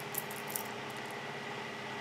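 Quiet steady room tone with two faint light clicks in the first half second, from a metal jewellery chain and charm being handled.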